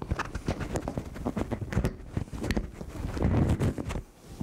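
Handling noise from a clip-on lapel microphone being repositioned on a shirt: close, loud rustling with many small knocks and thumps as fingers rub and tap the mic and its cable.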